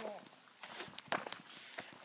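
Footsteps on a dirt woodland trail: a few scattered, irregular short steps and scuffs.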